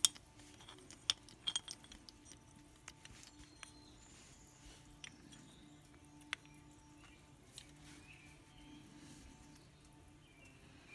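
Small metal clicks and clinks as a new brake pad is handled and worked into an ATV brake caliper onto its pin. There is a sharp click at the very start, a few more in the next two seconds and single clicks about six and seven and a half seconds in, over a faint steady hum.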